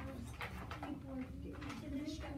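Quiet classroom chatter: children's voices murmuring and humming low, with a few light taps.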